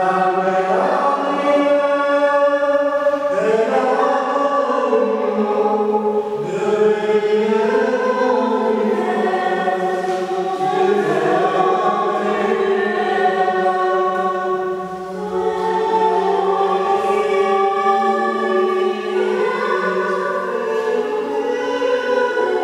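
A group of voices singing together in long, held chords that shift every few seconds, coming in suddenly at full strength.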